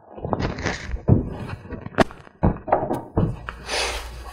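Costume head masks being pulled off, with rustling and several dull thumps and knocks.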